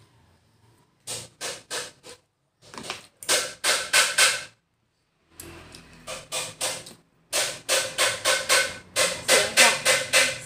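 Spoon and fork clicking and scraping against a plastic tray in quick runs of about four strokes a second, with short silent breaks between the runs.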